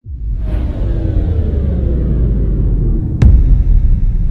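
Cinematic logo-intro sound effect: a deep rumble that starts suddenly out of silence, with tones slowly falling in pitch over it, and a single sharp hit about three seconds in.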